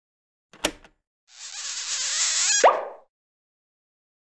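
Cartoon sound effects: a short click, then a swelling whoosh that ends in a quick upward-gliding plop.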